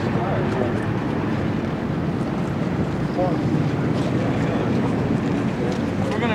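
A steady rumbling noise with brief snatches of indistinct voices, typical of an old field recording.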